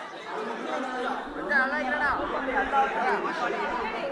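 Several people talking over one another at once, a lively overlapping chatter of voices, loudest about halfway through.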